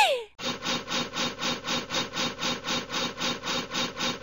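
A wooden fire-drill stick spun rapidly against wood to start a fire: an even, rhythmic rubbing of about five strokes a second that begins just after a short laugh.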